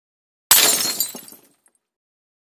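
A sudden crash sound effect about half a second in, bright and hissy, dying away over about a second with a few small clicks trailing after.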